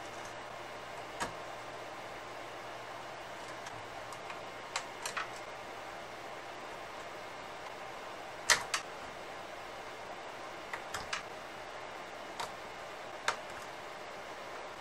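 Scattered sharp clicks and small knocks of hands unplugging cable connectors and handling circuit boards inside an opened synthesizer's metal chassis, the loudest a little past halfway through, over a steady hiss.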